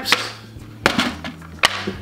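Blister packs of screw caps and cover buttons slapped down onto a wooden workbench: a few sharp hits, the loudest about one and a half seconds in.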